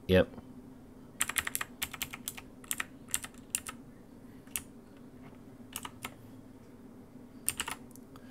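Computer keyboard keys tapped in short irregular clusters of quick clicks, with pauses between.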